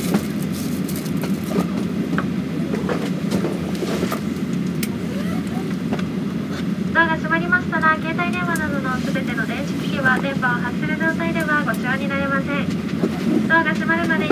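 Steady low rumble of airport terminal background noise at a boarding gate. About seven seconds in, a voice starts speaking over the public address and continues on and off to the end.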